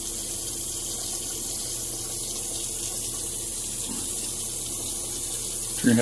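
Bathroom sink tap running steadily into the basin.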